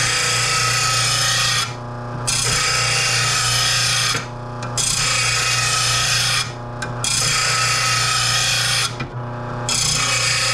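Steel mower blade being sharpened on an RBG-712 bench blade grinder: a loud grinding hiss in passes of about two seconds. Four short lulls between passes leave only the grinder motor's steady hum.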